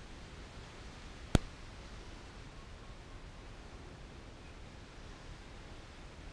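Low steady background hiss, broken once by a single short, sharp click just over a second in.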